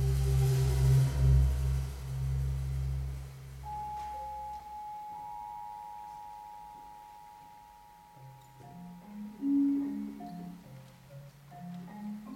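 Percussion ensemble playing mallet instruments. A deep, low sustained sound fades out over the first few seconds while a long high note rings on. About eight seconds in, a marimba starts a pattern of stepping low notes with higher notes above.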